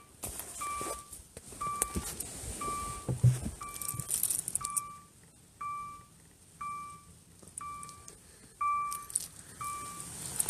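An electronic beep repeating about once a second, each a short steady tone, with rustling and a few knocks from handling, the loudest knock about three seconds in.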